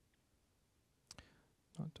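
Near silence with one faint click about a second in, a laptop key or trackpad press as the debugger steps on; a man's voice begins near the end.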